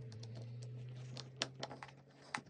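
Irregular light clicks and taps from hand work with small objects, over a steady low hum that drops slightly in pitch near the start.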